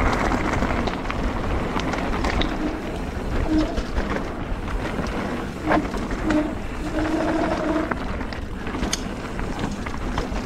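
Calibre Triple B mountain bike's tyres rolling fast over a loose gravel trail, with the rattle and clicks of stones and bike parts and rushing wind. Several short low hooting tones come in over it from the middle onward, the longest lasting about a second.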